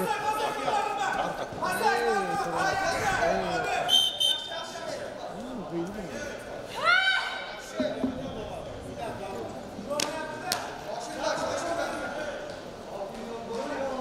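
Shouting and calls from coaches and spectators, echoing in a large hall during a wrestling bout, with one loud rising shout about seven seconds in. A few sharp knocks and slaps are mixed in.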